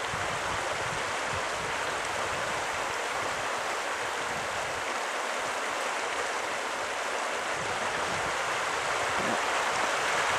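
Fast river current rushing over a shallow gravel riffle, a steady hiss of moving water that grows slightly louder near the end.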